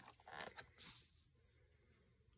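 Plastic blister packaging of a boxed action figure being handled: a soft rustle with one sharp click, all within the first second, then only faint room tone.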